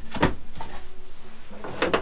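Handling sounds: tape being pulled off the edge of a wooden box blank, with a short noisy stroke just after the start and another near the end.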